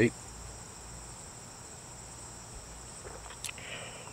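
Steady high-pitched chorus of crickets trilling, with one short faint click a little past three seconds.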